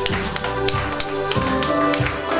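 Upbeat pop song playing, with the audience clapping along in time, about three claps a second.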